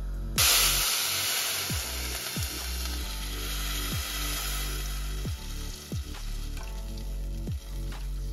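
Milk poured into a hot steel saucepan of browned vermicelli, hissing and sizzling as it hits the hot pan. The hiss starts suddenly about half a second in and slowly dies away, over background music.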